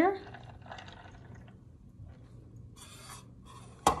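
Steeped tea draining from a bottom-dispensing infuser into a glass of ice, a soft uneven trickle. A sharp knock comes just before the end.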